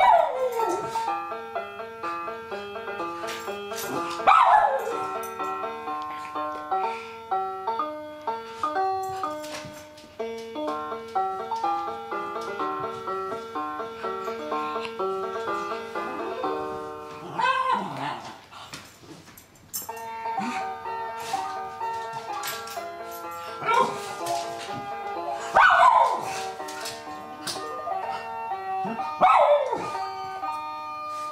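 A baby's electronic musical activity cube playing a bright, blocky tune of stepped notes throughout, with about five short, louder calls that slide in pitch sounding over it.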